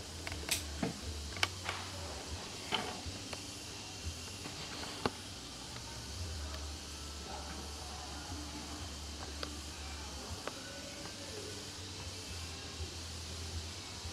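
Quiet background with a steady low rumble and a few faint clicks and knocks from camera handling, mostly in the first few seconds.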